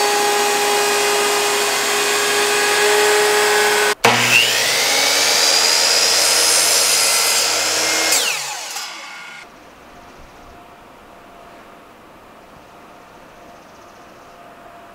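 A table-mounted router running steadily as a wooden board is fed past the bit. After a cut, a compound miter saw motor spins up with a rising whine, cuts through a wooden slat, and winds down with a falling whine just after the eighth second, leaving only a low background hum.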